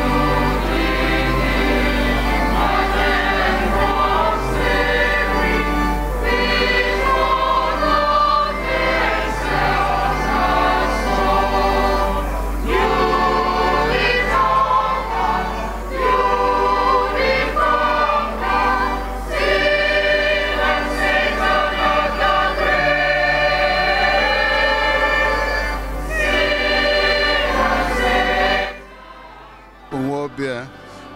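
Choir singing the withdrawal (recessional) hymn at a steady full level, breaking off suddenly near the end.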